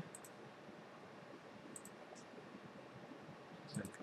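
A few faint computer mouse clicks, each a quick press-and-release pair, over a low steady hiss of room tone.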